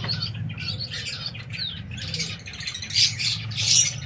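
Java sparrows chirping: short high calls scattered throughout, with two louder calls about three seconds in and just before the end, over a low steady hum.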